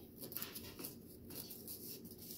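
Faint scraping with a few light ticks as a knife and fork cut through a cupcake on a disposable plate.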